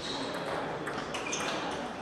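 Table tennis ball being struck by the bats and bouncing on the table during a rally: a few sharp, ringing pings.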